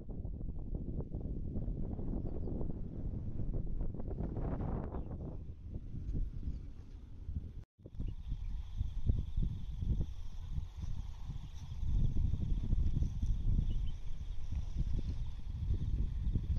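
Wind buffeting the microphone, a heavy low rumble that drops out abruptly a little before halfway and comes straight back. In the second half a faint, steady, high insect drone sits above it.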